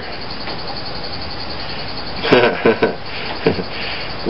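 A steady background hiss, with a short stretch of quiet, indistinct speech a little over two seconds in.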